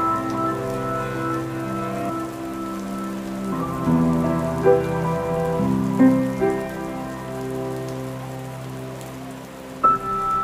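Slow instrumental music of held chords that change a few times, with a new chord striking near the end, over a steady sound of rain falling.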